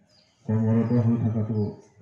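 A man's voice, speaking one short phrase of about a second into a handheld microphone.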